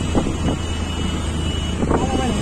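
Steady low rumble and road noise of a moving vehicle in city traffic, with wind on the microphone.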